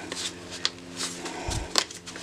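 Kraft shipping paper crinkling and rustling under nitrile-gloved fingers as it is pleated and creased, in a few short, sharp crackles with a small cluster of them past the middle.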